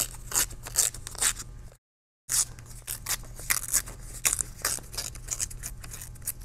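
Paper being torn by hand in little tears along the straight edge of an envelope tear template: a quick run of short, crisp rips, several a second, broken by a half-second gap about a third of the way in.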